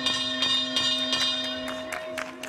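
Ring bell struck repeatedly, about three strokes a second, its ringing tones running together: the bell marking the end of the third and final round.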